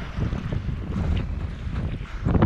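Wind buffeting the camera microphone in an uneven low rumble, over a fainter wash of water.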